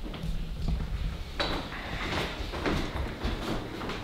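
Handling noise of a camera being picked up and carried: a low rumble with a few soft knocks and bumps.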